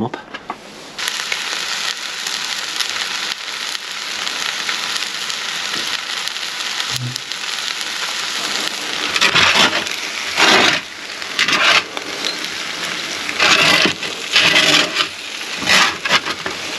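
Glazed partridges and their juices sizzling in a hot roasting tray inside a wood-fired oven, a steady sizzle starting about a second in, with several louder bursts of spitting in the second half as the glaze cooks on.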